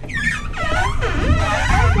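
Several high children's voices squealing and calling out over one another, echoing inside a plastic tube slide, over a low rumble.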